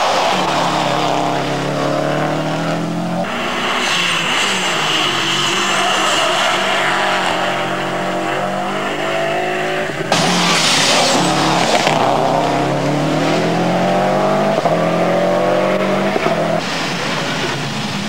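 Rally car engines accelerating hard along a tarmac stage, each note climbing in pitch and then dropping back at the gear changes, again and again. A steady high whine rides over the engine from about three seconds in until a sudden louder rush of noise at about ten seconds.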